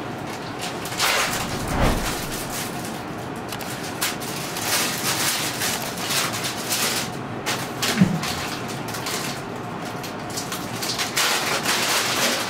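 Rustling and handling noises of people and objects moving about, with a soft low thump about two seconds in and a brief low sound about eight seconds in.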